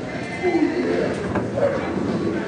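Indistinct voices in a large room, with short sounds that rise and fall in pitch about half a second in and again near the end.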